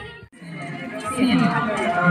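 Music with group singing cuts off abruptly. After a brief moment of near quiet, people's voices start up again.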